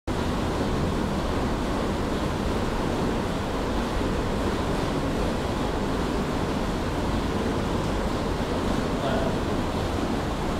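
A steady, even rushing noise, like surf or wind, holding one level throughout.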